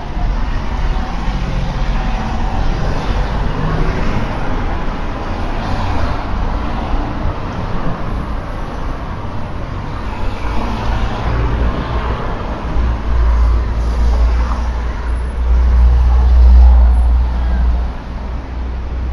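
Town-centre road traffic: vehicles passing, with a deep rumble that swells in the second half and is loudest near the end.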